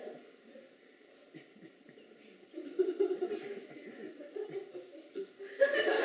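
Audience laughing in a theatre: a few scattered chuckles from about halfway through, then a loud burst of laughter near the end.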